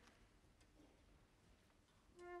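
Near silence: concert-hall room tone with a couple of faint clicks.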